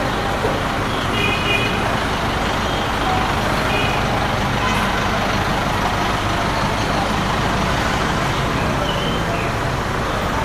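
Busy street traffic: the steady engine and road noise of passing motorbikes, cars and a bus, with a few short horn toots.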